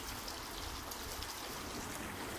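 Steady outdoor background noise: a soft, even hiss with a low rumble underneath and no distinct events.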